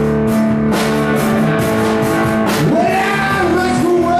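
Live rock band playing: guitar with a steady beat of drum hits, and a singer whose line slides up and holds a note in the second half.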